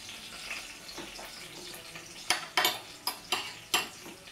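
Cooking juices trickling from a pot onto a roast joint on a plate, followed in the second half by about five sharp clinks of metal utensils against the china plate.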